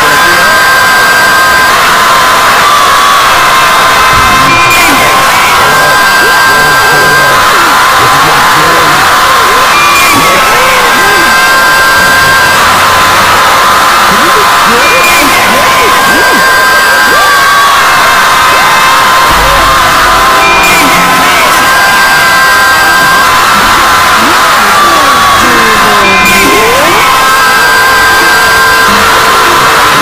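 A loud, unbroken mash-up of many overlapping cartoon screams and yells layered over music, with the pattern repeating about every five seconds as the looped clips cycle.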